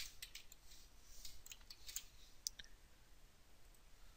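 Faint, scattered clicks of a computer keyboard and mouse, a few in the first two and a half seconds with a sharper single click about two and a half seconds in.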